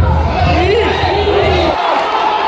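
Football crowd in the stadium stands shouting, many voices overlapping, over a low rumble that cuts off suddenly near the end.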